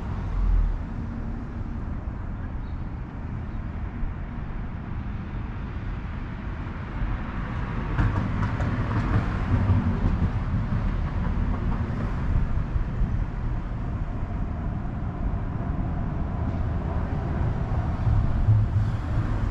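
Street traffic rumble passing the shopfront, a steady low noise that grows louder about eight seconds in as a heavier vehicle goes by.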